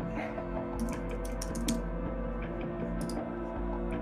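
Computer keyboard typing: a short run of key clicks about a second in and a few more near three seconds, over steady background music.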